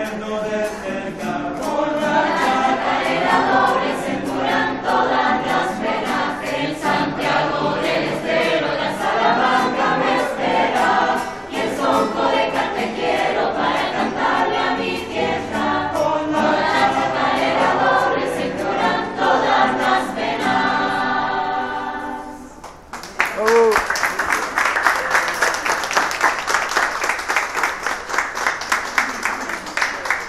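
Mixed teenage school choir singing together. The song ends about 22 seconds in, and applause breaks out, with a brief whoop at its start.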